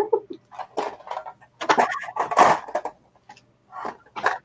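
Rustling and clinking as jewelry is handled and put into a bag, in a quick run of short bursts over about two seconds.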